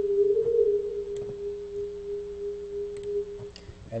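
A steady pure electronic tone from a Pure Data delay-line pitch shifter, its pitch wavering briefly about half a second in as the shift settles. It grows quieter and stops shortly before the end.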